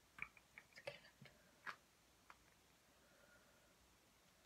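A few faint, quick clicks and taps, bunched in the first two seconds, with one more a little later.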